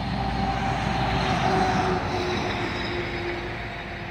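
A motor vehicle passing on the road, a steady hum with a slight drop in pitch, loudest about a second in and then fading.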